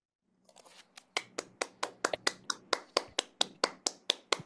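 Hands clapping at a steady pace, about five claps a second, soft at first and louder from about a second in.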